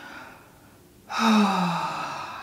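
A woman's long, contented sigh with a pitch that falls as it goes, starting about a second in, after a faint breath in.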